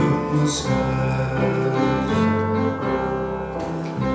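Piano accompaniment to a slow gospel song, sustained chords changing every second or so, with men's voices holding notes between sung lines.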